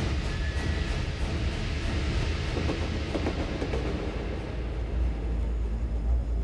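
Cinematic train sound effects with music from a Dolby Digital logo trailer: a dense rumbling, clattering rush that eases after about four seconds, with a low rumble swelling near the end.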